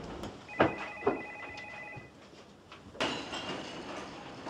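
A telephone bell rings in one trilled burst of about a second and a half, with two sharp knocks near its start. About three seconds in, a sudden rattling clatter with a metallic ring comes from a room service trolley laden with crockery being moved.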